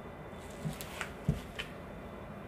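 Quiet hand-handling sounds while filling is piped from a piping bag onto a macaron shell on a wire rack: a few faint clicks and one dull thump a little past the middle.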